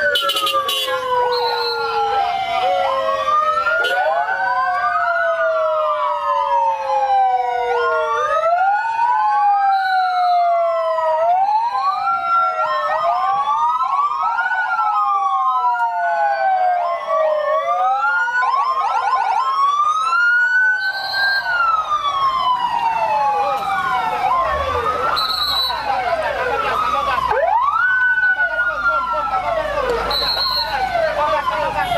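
Several vehicle sirens wailing over one another, each tone sweeping up quickly and falling slowly, with short high chirps now and then. A low engine rumble joins in during the second half.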